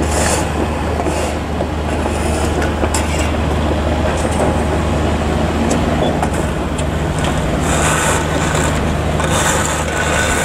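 Diesel engines of heavy construction machinery running steadily: a constant low drone, with short hissy bursts now and then.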